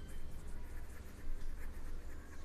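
A pen scratching on paper in short, irregular strokes as a few words are handwritten.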